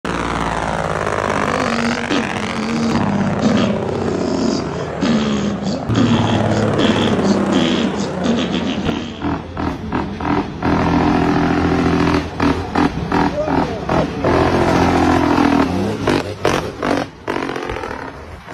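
Diesel truck engine brake (jake brake) barking loudly through the exhaust as a truck runs downhill, the engine pitch falling and rising. About halfway through it becomes a rapid staccato rattle of exhaust pulses.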